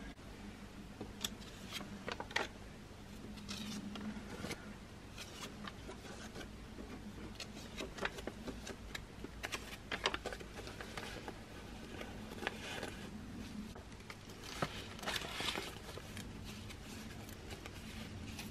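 Paper banknotes being handled, counted out by hand and slid into a paper envelope: faint rustling and crisp snaps of bills at irregular intervals.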